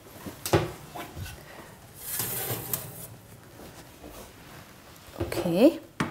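Oven door being opened and a baking tray of scones handled: a few sharp clacks and knocks, with a short rush of noise about two seconds in.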